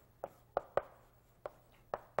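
Chalk striking a blackboard as it writes: about five short, sharp knocks at uneven intervals, with quiet between.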